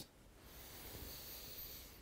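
A man's faint, long deep breath in, starting about half a second in and lasting about a second and a half. It is a slow recovery breath taken in a breathing exercise after warm-up drills.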